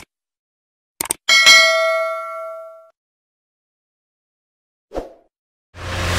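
Subscribe-button sound effect: two quick mouse clicks about a second in, then a bell ding that rings out and fades over about a second and a half. A soft click comes near the end, and theme music starts just before the end.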